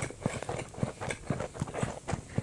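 A person chewing a mouthful of food with the lips closed, close to the microphone: a steady run of short, wet mouth clicks, about four a second.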